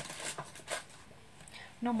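A few short, light taps and rustles from hands rummaging in a box of tea lights, then quiet. Near the end a woman starts speaking.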